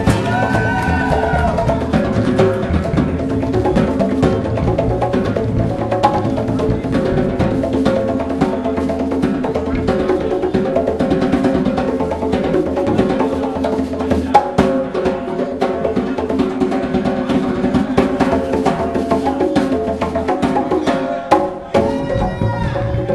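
Live acoustic band playing an instrumental passage, with hand-played conga drums prominent over sustained pitched instruments.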